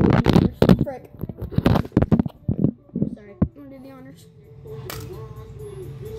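Phone handling noise: a run of irregular knocks and rubs on the microphone, then quieter voices.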